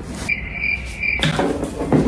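Crickets-chirping sound effect, the stock cue for an awkward silence: a steady high chirp pulsing about three times over roughly a second, then cutting off. Rustling handling noise follows.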